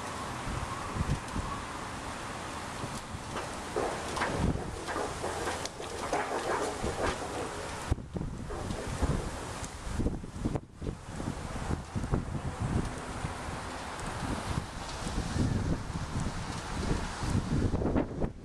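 Strong, gusty wind buffeting the microphone, in uneven low rumbles and thumps.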